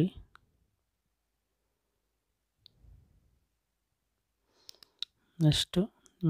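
Mostly quiet room tone broken by a few faint clicks, two close together a little before the end, followed by a voice starting to speak near the end.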